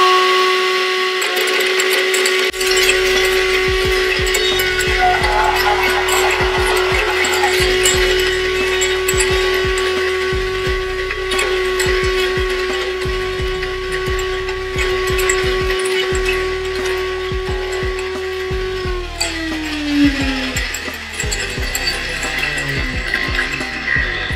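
Open-top blender motor running at a steady high speed, ice cubes clattering and being crushed and flung out of the jar. About 19 seconds in the motor cuts and winds down, its pitch falling away.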